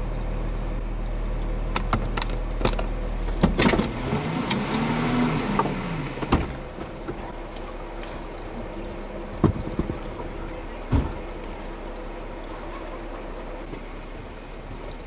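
Jeep engine idling with a steady low hum that drops away about four seconds in, followed by a brief rising-and-falling whine. After that come a few sharp knocks and clunks.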